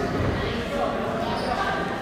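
Spectators talking and shouting over one another in a large gym hall, with dull thuds.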